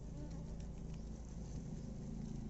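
A faint, steady low buzzing, like a flying insect.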